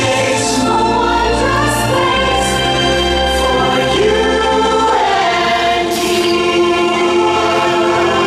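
Choir singing sustained chords over instrumental music with a steady low bass: the soundtrack of a castle projection-mapping show.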